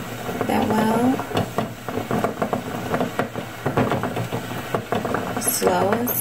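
Melted candle wax poured in a steady trickle from a metal pouring pitcher into a small candle tin. A voice murmurs briefly near the start and again near the end.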